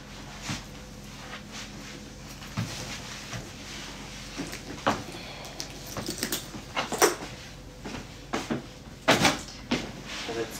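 Handling noises: scattered knocks, clicks and rustles as a purse and clothes are moved about, few at first and more frequent and louder in the second half, with the sharpest knocks about 7 and 9 seconds in.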